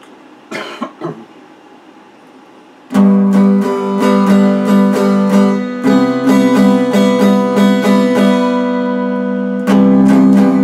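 Electric guitar: a few brief scratchy noises, then about three seconds in, loud strummed chords start ringing out and carry on in a steady rhythm.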